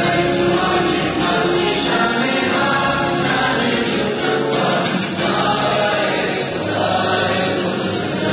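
A song sung by a chorus of voices over instrumental backing.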